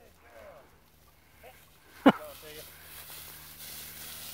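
Dry tall grass rustling and swishing steadily as someone walks through it, building from about halfway. A man's sharp shout of "Fetch" about halfway is the loudest sound.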